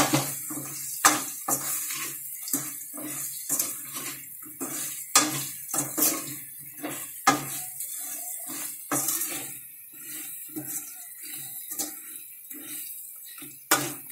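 Steel spoon stirring and scraping raw mango pieces in a steel kadhai, with repeated metal-on-metal clinks and scrapes about once or twice a second over a low sizzle: the spice powders frying in the oil.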